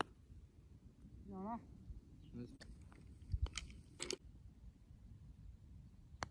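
A putter striking a golf ball once, a single sharp click right at the start. Then faint, brief voices and a few small clicks over a low rumble.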